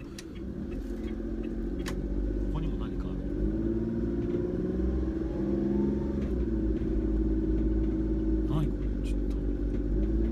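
A kei van's small engine and road rumble heard from inside the cabin as the van drives off and accelerates. The engine note rises over the first few seconds and changes pitch a few times, with a few faint clicks.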